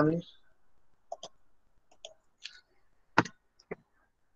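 A handful of short, sharp clicks at a computer, spaced irregularly over about three seconds, the loudest one near the end.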